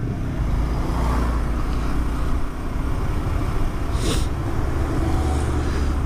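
Honda CBR single-cylinder motorcycle engine running steadily at low revs with road and wind noise, the bike held to a slow pace behind a bus. A brief hiss comes about four seconds in.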